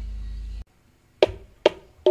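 Gamelan music: the low ringing of a sustained note cuts off suddenly, and after a short silence two sharp percussive strikes sound about half a second apart, the opening strokes of the next gamelan piece.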